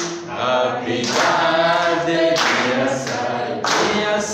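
A congregation singing a birthday song together without accompaniment, in held phrases with short breaks between them.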